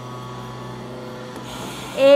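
A steady low hum with a few faint steady tones above it, and no other clear event.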